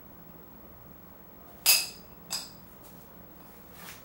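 Two sharp metallic clinks about half a second apart, each with a brief ring, as metal scooter wheel parts knock together during reassembly; a soft rustle follows near the end.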